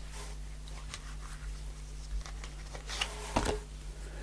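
Faint soft rustles and light taps of a tarot card being drawn from the deck and laid down on a cloth-covered table, the loudest about three and a half seconds in.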